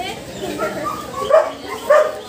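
A dog whimpering and yipping in a few short high calls, the loudest near the end.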